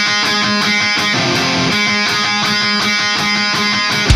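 Rock song intro: a distorted electric guitar plays a repeating riff on its own, struck evenly at about four strokes a second.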